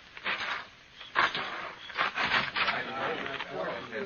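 Footsteps on wooden boards: a handful of irregular knocks and scuffs. Faint men's voices murmur in the background from about three seconds in.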